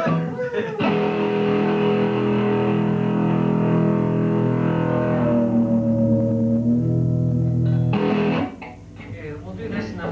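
A live band strikes one chord on electric guitars and holds it, ringing steadily for about seven seconds, with one note bending slightly in the middle. The chord cuts off about eight and a half seconds in, leaving quieter talk.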